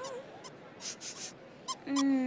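A cartoon character's whimpering voice glides and trails off at the very start. Then comes a quiet stretch with a few soft swishes, and a steady held note begins near the end.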